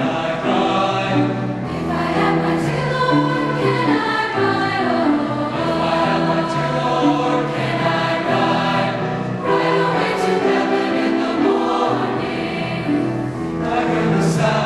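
Mixed high school choir of male and female voices singing in held, sustained chords, accompanied by piano.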